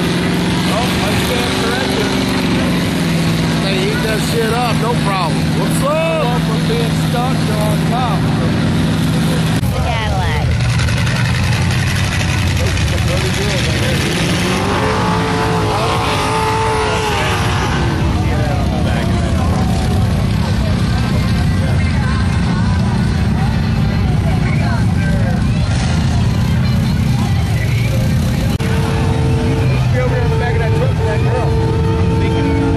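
Mud-bog truck engine running hard at high revs as the truck churns through a deep mud pit, its pitch stepping down a few seconds in. Crowd voices and shouting sound over it.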